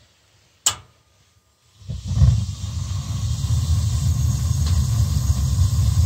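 A single sharp click, then about two seconds in the steam boiler's atmospheric gas burners light as the main gas valve opens, and burn on with a steady low rumble. The pilot flame has been proven by the flame sensor.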